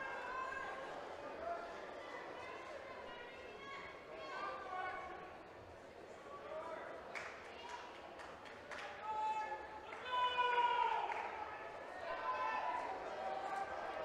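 Voices shouting from a distance in a large echoing hall, with a couple of sharp knocks about seven and nine seconds in.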